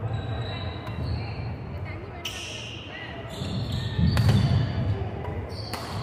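Badminton rally: rackets striking the shuttlecock in several sharp hits, one every second or two, with players' footfalls on the wooden court, echoing in a large hall.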